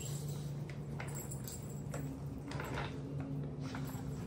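Young puppies scuffling and tugging at stuffed toys on a hard floor: scattered light clicks and rattles, busiest about two and a half seconds in, over a steady low hum.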